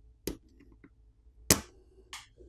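Plastic pry tool prying off the small plastic cover over a smartphone's fingerprint-reader connector. There is a light click, a few faint ticks, then a sharp snap about one and a half seconds in as the cover pops free.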